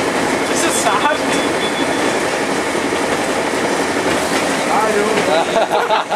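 Interior running noise of a British Rail Class 142 Pacer railbus on the move: a steady, loud rumble and rattle of the carriage, with a faint thin whine over it for the first couple of seconds.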